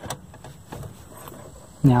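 Faint clicks and handling noise as a slotted stainless steel bracket is pushed up onto the sofa's metal frame, then a man's voice near the end.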